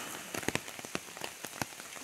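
Steady rain falling, with frequent sharp taps of drops striking nearby surfaces.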